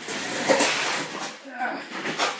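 Rustling handling noise for about a second as small stove parts are handled, followed by a brief voice sound.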